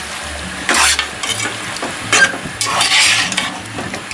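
Slotted spatula stirring and scraping spiced mutton and onions around a pot, the meat sizzling as it fries. Several quick scraping strokes, the loudest about three seconds in.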